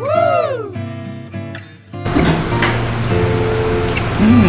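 A short musical sound effect dropped in by the editor: a tone that swoops up and back down, then a couple of held notes. About halfway through it gives way to steady eatery room noise with a low hum.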